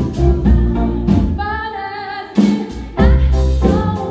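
Live band playing: a woman singing over electric bass, drum kit and keyboard. For about a second in the middle the bass and drums drop out under a held, wavering sung note, then the full band comes back in.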